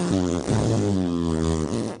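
A man making a fart noise with his mouth: one long, low, steady buzzing tone that cuts off just before the end.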